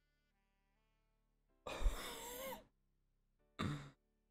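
A man lets out a long, loud sigh about two seconds in, followed by a short breath near the end, over faint background music.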